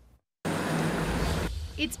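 Pickup truck driving through floodwater: a loud rush of splashing water over a low engine and tyre rumble. It starts abruptly about half a second in, and the splashing stops about a second later while the low rumble carries on.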